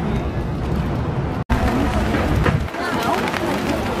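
Outdoor street noise dominated by a low, uneven rumble of wind on the microphone, with faint voices in the background. The sound cuts out for an instant about a second and a half in.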